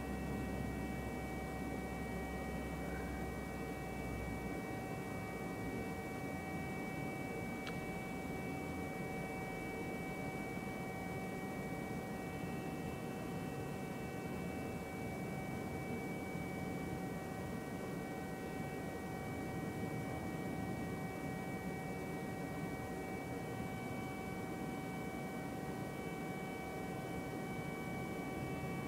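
Diesel GO Transit passenger train standing at the station, a steady low rumble with a constant high whine over it. A deeper hum under it fades out about four seconds in.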